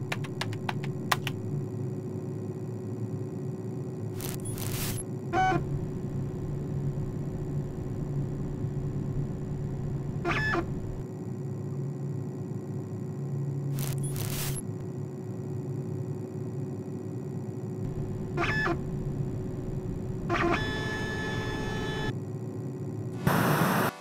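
Retro computer-terminal sound effects: a steady electrical hum with occasional short bursts of static, a quick run of typing clicks at the start, and several short electronic beeps, the longest about four seconds from the end.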